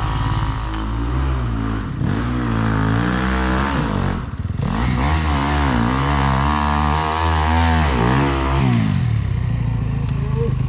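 Enduro dirt bike engine revving hard and unevenly as it climbs a steep trail, the throttle blipped on and off. There is a short break in the revs about four seconds in, and the note settles steadier near the end.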